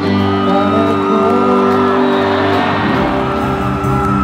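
Live band music with electric guitar, sustained chords and a melodic line, with a crowd whooping over it; a pulsing bass line comes in about three seconds in.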